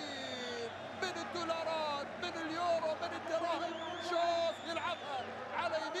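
A male football commentator talking on over steady stadium crowd noise.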